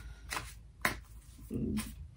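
A tarot deck being shuffled in the hands, the cards snapping against each other in a few short sharp clicks.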